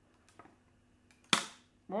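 A single sharp crack about a third of the way past the first second, with a faint tick before it: the flexible build plate of a Creality K1 Max being bent so the glue-stuck 3D print starts to break loose. The glue holds it hard, so it takes a lot of bending.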